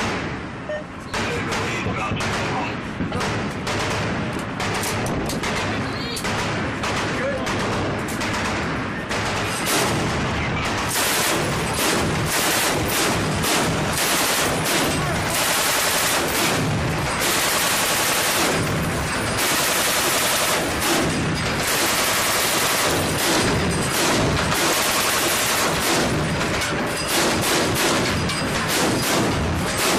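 Belt-fed machine gun firing on its bipod, loud and rapid. It fires short repeated bursts at first, then long, nearly continuous bursts from about halfway on.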